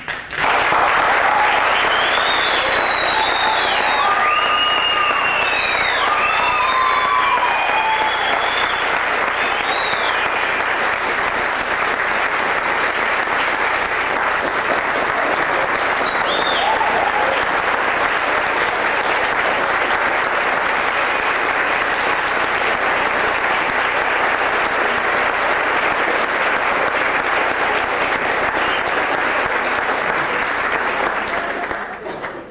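A theatre audience applauding, starting suddenly and holding steady and loud throughout, with cheering calls over the clapping in the first ten seconds or so.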